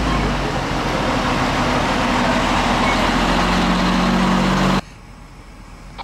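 Fire trucks' engines running, a loud steady rumble with a low hum that grows stronger about three seconds in. The sound cuts off suddenly near the end, leaving a much quieter steady rushing noise.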